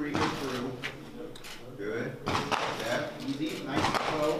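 Mostly speech: a man's voice talking in short phrases.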